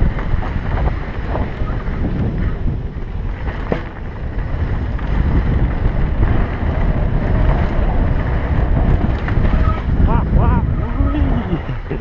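Wind rushing over a helmet-mounted camera microphone, mixed with the rumble and rattle of a mountain bike riding fast down a dirt trail.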